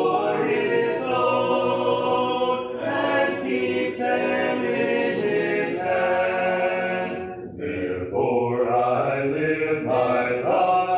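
Congregation singing a hymn a cappella in long held notes, with a short break between lines about seven and a half seconds in.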